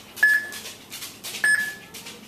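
Key presses on a homemade Arduino rocket launch controller's keypad while a launch code is entered. Each press gives a click and a short high beep, twice, about a second apart.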